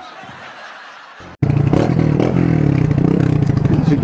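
Faint hiss, then, about a second and a half in, a motorcycle engine heard loud and close from on the bike, running with a rapid steady pulse.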